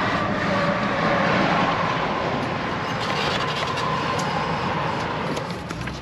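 Steady road and tyre noise of a moving car, heard from inside the cabin, with a faint steady whine.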